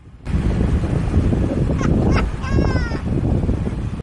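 Wind rushing over the camera microphone and the Jeep's driving rumble. About two and a half seconds in, a man's short, slightly falling laugh from the Jeep that sounds more like a crow cawing than a human.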